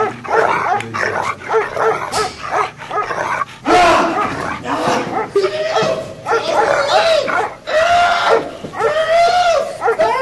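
A dog barking and yelping over and over, the calls rising and falling in pitch, with longer whining yelps in the last few seconds.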